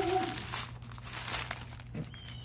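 Plastic-wrapped wound dressing packets crinkling as they are handled and pulled out of a backpack, in a scattered, irregular run that is densest in the middle.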